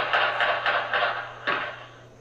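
A rapid run of about six gunshots with echo between them, picked up by a surveillance camera's microphone; the last shot comes about a second and a half in.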